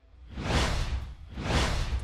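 Broadcast transition sound effect: two whooshes about a second apart, each swelling and fading, over a low rumble.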